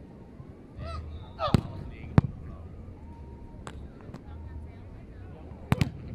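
Beach volleyball rally: four or five sharp smacks of hands and arms striking the ball, the loudest about two seconds in and two close together near the end, over a low wind rumble.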